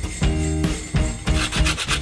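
Held notes of background music, then short rasping strokes of an orange being rubbed across a fine hand grater in the second half.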